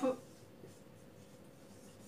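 Marker pen writing on a whiteboard, faint strokes.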